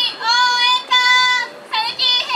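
Trumpet playing a cheering-squad fanfare of high, held notes, each sliding up into pitch, with short breaks between them.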